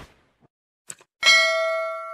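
Two quick clicks about a second in, then a bright bell ding with several ringing tones that fades slowly: a notification-bell sound effect for a subscribe-button animation.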